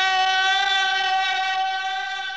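A single long, steady high tone with many overtones, held at one pitch without wavering, beginning to fade near the end.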